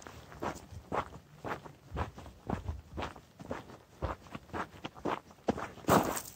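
Footsteps crunching on a dirt hiking trail at a brisk walking pace, about two steps a second.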